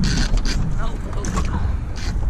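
Spinning reel and rod being worked by hand while fighting a hooked fish, with sharp clicks and scrapes of handling in the first half second over a steady low rumble of wind and water.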